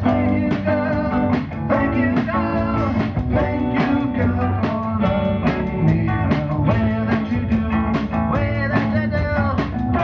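Live rock-and-roll band playing: guitar over a drum kit keeping a steady beat, with a singing voice.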